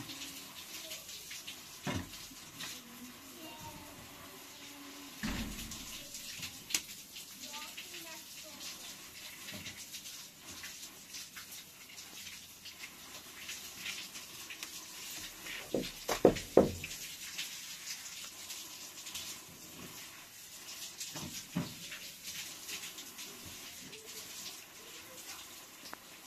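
Wet plaster being scooped by a gloved hand from a tub and smeared onto a brick wall: soft wet squelching and scraping, with a few sharper knocks, the loudest about sixteen seconds in.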